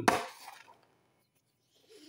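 A bar of soap scraped and set down on its cardboard box: a brief rubbing scrape in the first half-second that fades out.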